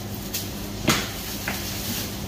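Short knocks and one sharp thump about a second in as a whole lamb carcass is lifted and shifted about on a butcher's cutting table, over a steady low hum.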